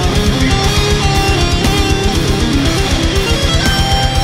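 Heavy metal recording, an instrumental passage: electric guitars playing pitched lines over a fast, even pulse in the low end.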